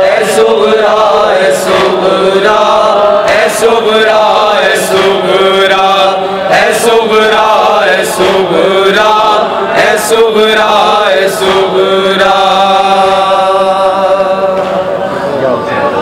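Men's voices chanting a noha, a Shia mourning lament, in long, wavering held notes. Sharp hand slaps of matam (chest-beating) fall on it roughly every one and a half seconds, some of them doubled.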